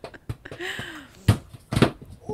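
A football being kicked up on concrete: a string of short taps as the ball comes off the foot, then two louder thuds in the last second as the player goes down onto the ground.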